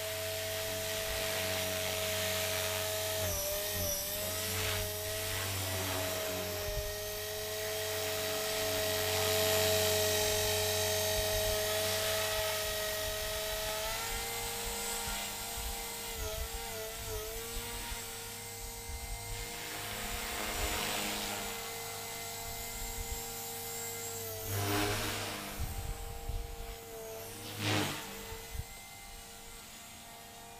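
Blade 300 X micro RC helicopter with an upgraded 440H electric motor, its motor and main gear whining at stock head speed with the rotor wash around it. The whine holds a steady pitch, shifts about halfway, then surges briefly a couple of times and grows quieter near the end.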